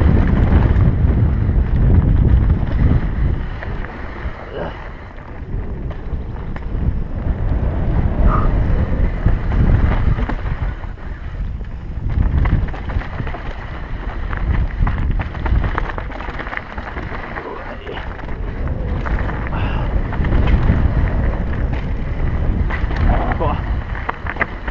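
Wind buffeting the microphone of a helmet camera on a mountain bike descending at speed, a loud low rumble that swells and dips, with the bike rattling and clattering over a rocky dirt trail.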